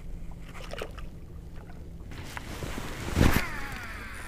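A cast with a baitcasting rod and reel: a sudden rush about three seconds in, then the reel's spool whirring down in pitch as line pays out.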